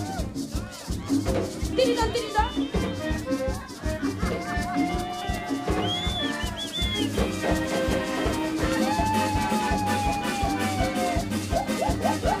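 Live cumbia band playing: a steady beat from congas and a drum kit, under long held melody notes.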